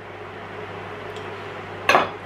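A single sharp knock near the end, a kitchen knife set down on a wooden chopping board, over a steady low hum.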